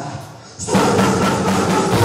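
Live band music: the sound drops away briefly at the start, then the full band comes back in loud about two-thirds of a second in and plays on.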